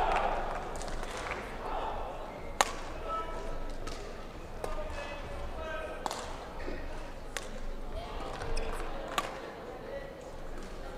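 Badminton racket hitting a shuttlecock back and forth, a sharp hit every one to two seconds with the loudest a little over two seconds in, over a murmur of voices in the hall.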